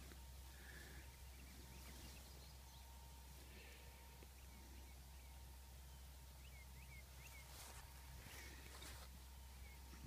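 Near silence: faint outdoor ambience with a few short, soft bird chirps about two-thirds of the way through.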